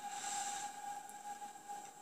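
A steady held tone over a hiss that swells briefly in the first second, from the TV episode's soundtrack playing back.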